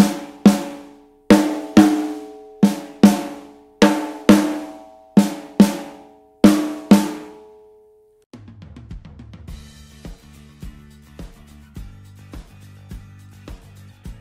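Snare drum hit with a stick in six pairs of single strokes, each stroke ringing with a pitched drum-head tone and dying away, as strokes with and without rimshot are compared. About eight seconds in, the strokes stop and soft background music with a steady beat begins.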